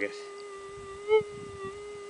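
Minelab metal detector's steady buzzing threshold tone, with one brief louder beep about a second in.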